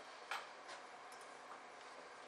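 Faint computer keyboard clicks: two keystrokes, the first about a third of a second in and the louder, the second a little under half a second later, answering a terminal prompt with 'y' and Enter.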